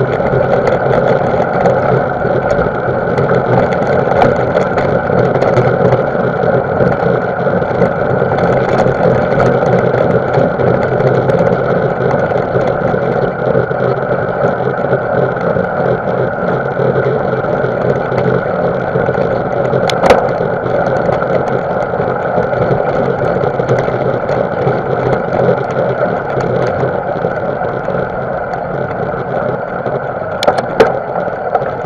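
Riding noise picked up by a camera on a mountain bike on a loose gravel track: tyres rolling over gravel mixed with wind, a steady rushing noise. One sharp knock about 20 seconds in, like the bike jolting over a bump.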